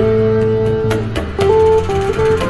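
Electric guitar playing a melody of held single notes, each lasting up to about a second, over a backing track with bass and regular percussion hits.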